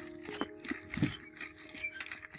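Background music with held notes, over scattered clicks and rustles of goats feeding among dry fodder stalks, with a low thump about a second in.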